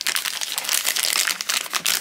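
Foil blind-box bag crinkling and rustling in the hands as it is worked open and the figure is pulled out of it, a dense run of crackles.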